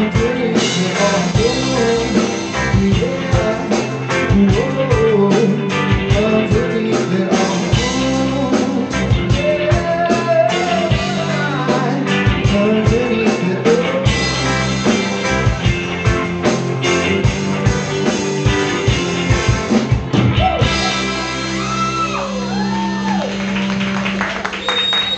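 Live rock band playing: electric guitars, bass and drum kit, with a male lead vocal singing over them.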